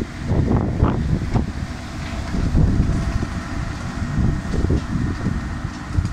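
A 14-ton Doosan excavator's diesel engine running while it works a tree shear in a tree, with wind buffeting the microphone in uneven low gusts over it.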